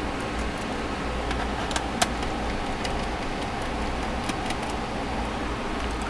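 Steady low room hum, with a sharp click about two seconds in and a few fainter ticks from a screwdriver and screws on a laptop's plastic bottom case as the screws are taken out.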